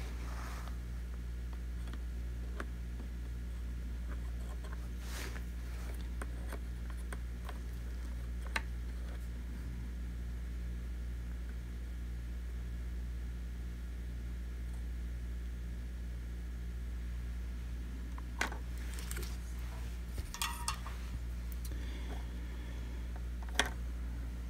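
Steady low electrical hum under a few small clicks and taps from soldering work on the robot vacuum's plastic housing. The clicks are sparse, with several in the last few seconds.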